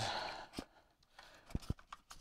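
A few faint clicks and light handling noise as 14-2 Romex cable is fed into an electrical box.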